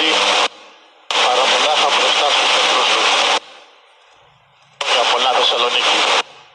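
Loud outdoor voices in three bursts, each cutting in and out abruptly, with a rough hiss over them.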